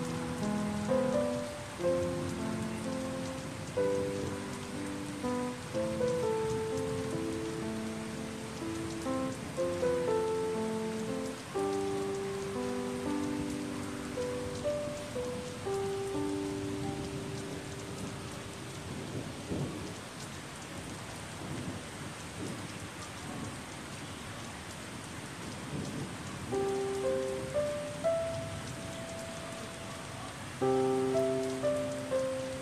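Steady rain falling, with slow, calm solo piano playing over it. The piano stops for several seconds past the middle, leaving only the rain, and comes back in near the end.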